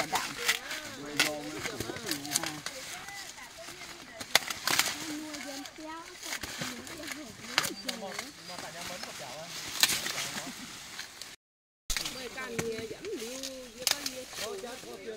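Dry corn husks and stalks crackling and snapping as ears of corn are broken off and husked by hand, with several sharp snaps standing out, over people talking.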